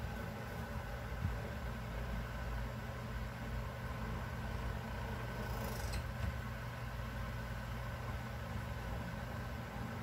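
Steady low mechanical hum with several faint steady tones above it, unchanging throughout, and a brief faint high hiss about six seconds in.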